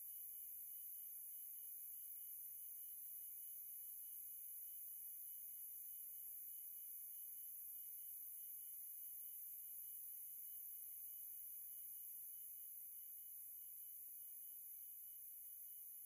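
Faint steady electronic hiss with a low hum, unchanging throughout: the empty noise floor of a live broadcast feed with no sound on it.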